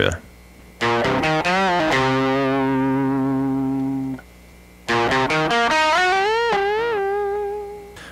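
Electric guitar in standard C tuning playing two short lead fills up to speed: a run of quick notes settling into a held, ringing note, a brief pause, then a second phrase that climbs to a high note given a couple of bends and releases before fading out.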